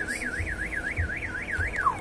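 Electronic vehicle alarm siren warbling, its pitch rising and falling about four times a second, then sweeping down once near the end.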